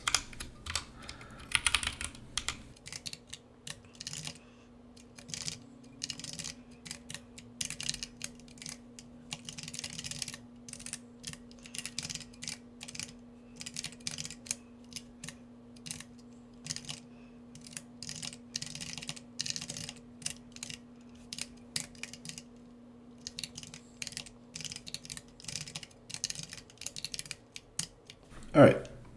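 Typing on a computer keyboard: irregular runs of quick keystrokes broken by short pauses. A faint steady hum runs underneath from about six seconds in.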